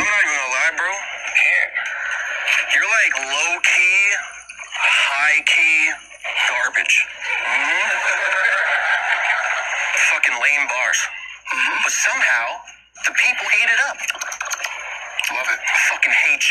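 A man's voice rapping a cappella, played back from a battle-rap recording; it sounds thin, with almost no bass.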